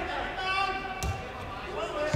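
A football kicked on artificial turf: one sharp thud about a second in, echoing in a large indoor hall, with men's voices calling.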